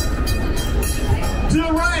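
Amusement-park railroad passenger car rolling along the track with a steady low rumble. A man's voice starts near the end.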